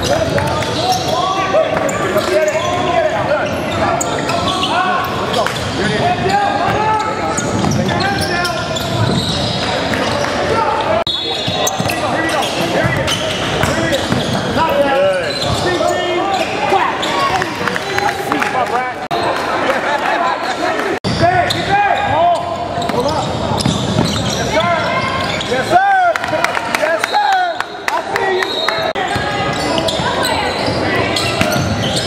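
Basketball game on a hardwood gym floor: the ball dribbling and bouncing, with players and spectators calling out indistinctly, echoing in the large hall.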